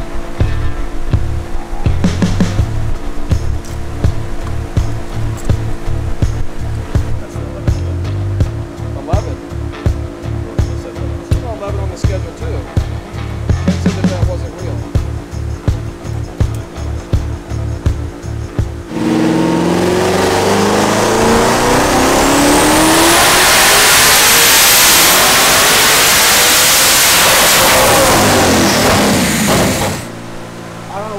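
Backing music with a steady beat, then a twin-turbocharged 5.2 L Predator V8 in a 2020 Shelby GT500 making a loud full-throttle dyno pull. Its pitch climbs steadily for about ten seconds and cuts off suddenly near the end, where the crew says it hit the rev limiter.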